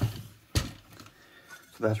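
A single sharp knock about half a second in as a metal magnetic circuit-board holder is handled and turned over.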